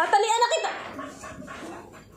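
A dog giving a short, high-pitched wavering yelp in the first moment, the loudest sound here, followed by quieter sounds.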